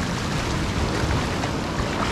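Shallow sea surf washing in and around the base of a rock, a steady rush of water, with wind rumbling on the microphone.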